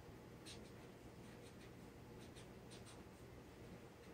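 Faint, intermittent scratching of pencil on paper: short writing strokes at irregular intervals against a quiet room.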